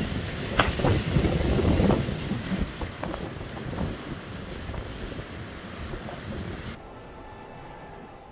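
Wind buffeting the microphone and water rushing along the hull of an Ultim racing trimaran sailing at speed, with a few sharp slaps of water in the first two seconds. The rush fades and near the end turns to a duller hiss.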